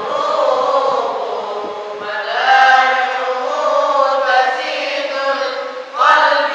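A group of male voices, men and boys, chanting Quranic recitation (qirat) together in unison in long, wavering held notes. The loudness dips briefly just before the end.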